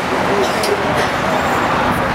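Steady road-traffic noise, a motor vehicle passing close by, with faint voices underneath.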